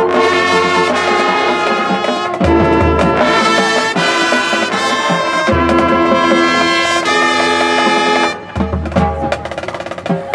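Marching band brass holding loud sustained chords that change twice, with low brass entering at each change. About eight seconds in the big chord cuts off, leaving quieter, sparser playing with some percussion hits.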